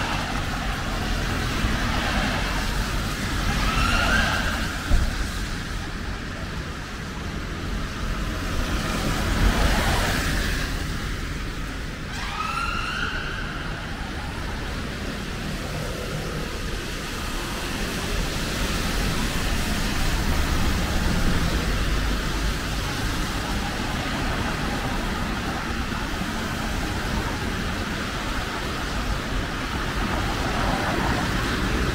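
Road traffic on a wet city street: cars passing with a steady rumble and tyre noise, one swelling past about ten seconds in. A sharp knock comes about five seconds in, and short rising squeals come twice, at about four and twelve seconds in.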